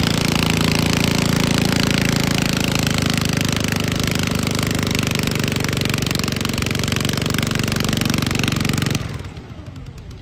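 Red garden tractor's engine running hard at full throttle under load, pulling a weight-transfer sled, with a rapid steady pulse; it cuts off abruptly about nine seconds in as the pull ends.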